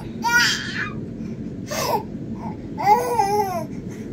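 A six-month-old baby vocalising in three short high-pitched babbles, the longest about a second long near the end, over a steady low background hum.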